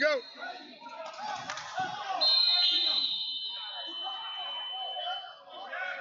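Long, steady blasts of referees' whistles in a large gym. One starts about two seconds in and a second, slightly lower whistle overlaps it until about five seconds in, over voices and crowd chatter.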